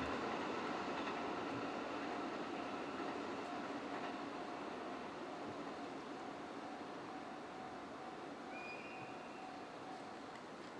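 Passenger train of E26 sleeper coaches hauled by an EF81 electric locomotive rolling away along the track, its rumble fading steadily into the distance.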